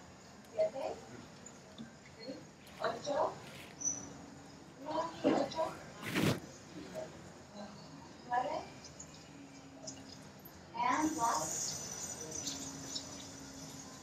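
Faint recorded speech played back into the room: a therapist and a patient recovering from a traumatic brain injury counting numbers aloud in short bursts, the therapist's voice louder than the patient's. A sharp click comes about six seconds in.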